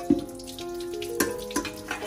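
Tap water running steadily onto the bottom of a metal pot held in a sink as it is rinsed.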